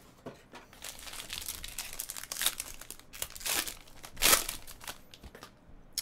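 A foil trading-card pack being torn open and unwrapped, the foil crinkling in irregular bursts, loudest about four seconds in.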